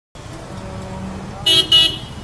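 Street traffic noise, with a vehicle horn giving two short toots about one and a half seconds in.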